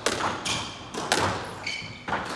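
Squash ball being hit during a rally: several sharp cracks of racket and ball against the walls, echoing in the enclosed court, with short high squeaks of shoes on the wooden floor between them.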